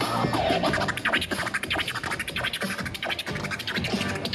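Turntablist scratching a vinyl record on a Technics turntable over a playing beat, in quick choppy cuts. One hand works the record and the other the mixer.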